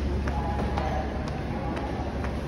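Footsteps on a brick-tiled floor: a few short, irregular steps over a steady low hum.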